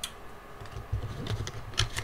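Trading cards being handled and set down on a table: a few light clicks and taps, the sharpest near the end.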